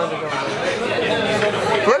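Several people talking over one another in a busy dining room, with laughter near the end.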